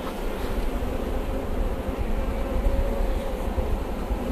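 Honeybees humming over an open hive, under a low steady rumble.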